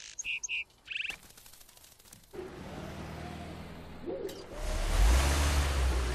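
A small bird chirps a few short times. Then a box truck's engine sets in with a steady low hum and grows louder as the truck drives past, with a rush of road noise.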